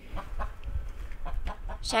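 Backyard hens clucking a few times, short and separate, over a low rumble.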